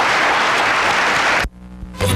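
Studio audience applauding. The applause cuts off abruptly about one and a half seconds in where the recording ends, leaving only a faint low hum.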